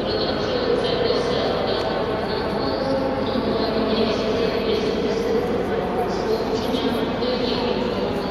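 Steady crowd babble: many overlapping voices at an even level, none standing out as a single speaker.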